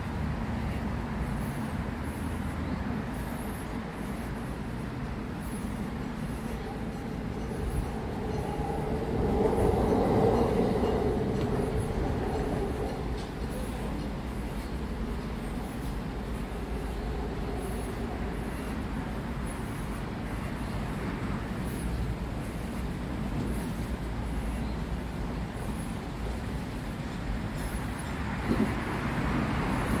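Steady low rumble of urban background noise, with a vehicle passing that swells to a peak about ten seconds in and fades away a few seconds later.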